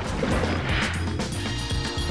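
Background music, with a splash of a person dropping into water about half a second in.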